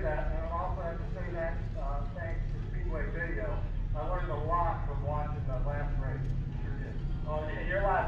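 Mostly speech: a man talking without pause, heard from inside a car, over a steady low rumble.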